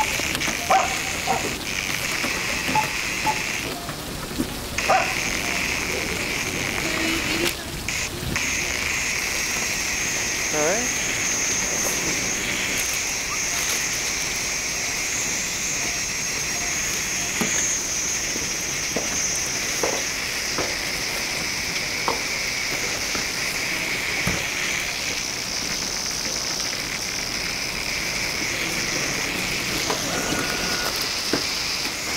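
Steady rain hiss with scattered small drips and taps. The hiss cuts out briefly twice in the first eight seconds.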